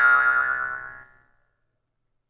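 Jaw harp plucked once: a single twangy note at a steady pitch that rings and fades away over about a second.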